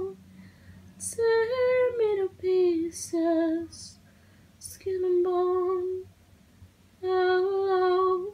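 A woman singing solo with no accompaniment, in short held phrases separated by pauses of about a second.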